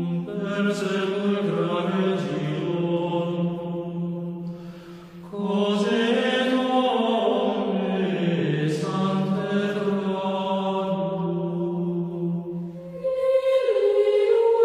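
Sacred vocal chant as theme music, voices holding long sustained notes and moving in steps between them. It breaks off briefly about five seconds in, then resumes, and grows fuller and louder just before the end.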